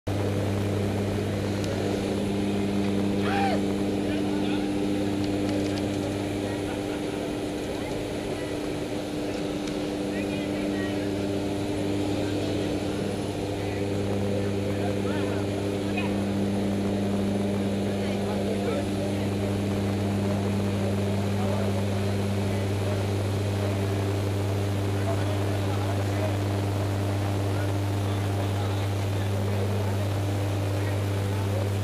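Steady drone of a propeller aircraft's engines heard from inside the cabin, a constant low hum that holds the same pitch throughout.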